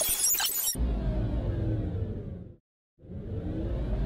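Logo-intro sound effects: a dense crackling, shattering noise cuts off under a second in, giving way to a low rumble with a falling sweep that fades to a moment of silence, then swells back in with a rising sweep near the end.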